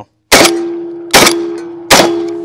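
Three 12-gauge shots of Fiocchi buckshot from a Saricam SS-4 semi-automatic shotgun, less than a second apart. Each is followed by a metallic ringing that hangs on and slowly fades.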